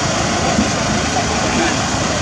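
Scattered voices of people over a steady, loud, noisy rumble, with no music playing.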